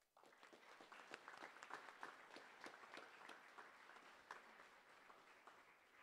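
Assembly audience applauding, many hands clapping together; it starts just after the announcement and gradually dies away toward the end.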